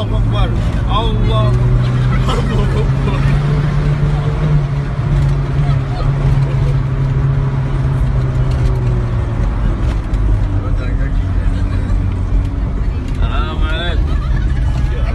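An old van's engine, heard from inside the cabin, drones steadily as it labours uphill in low gear, and its pitch drops about two-thirds of the way through. Passengers' voices cry out near the start and again near the end.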